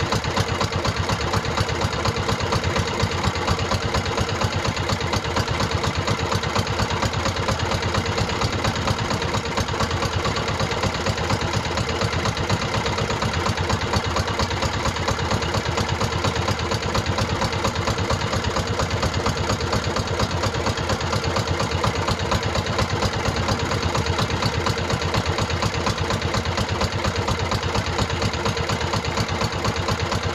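Outrigger fishing boat's engine running steadily at idle, heard from on board, with no change in speed.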